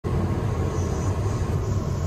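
Passenger train running, heard from inside the carriage: a steady low rumble with a faint steady hum above it.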